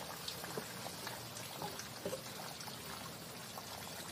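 Steady hissing background noise, with a few faint light taps as an acoustic guitar's body is handled.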